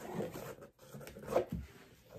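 Soft, irregular handling sounds of art materials on a tabletop: small rubs and light knocks, the loudest about one and a half seconds in.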